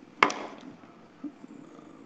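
Faint background hiss on a video-call audio line, broken about a quarter second in by one short, sharp burst of noise that dies away quickly.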